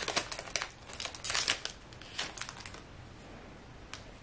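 Foil wrapper of a trading-card pack crinkling in a few short spells over the first two seconds, then quieter handling.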